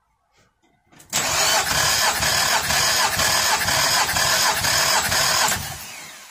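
2006 Nissan Altima four-cylinder engine being cranked over on the starter with its spark plugs out for a compression test: a steady cranking drone with a rhythmic pulse about twice a second. It starts about a second in and stops shortly before the end.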